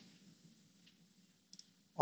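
Near silence with a couple of faint computer mouse clicks, the second about one and a half seconds in.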